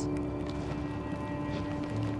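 A sustained, low dramatic music drone of held tones, with no melody or beat.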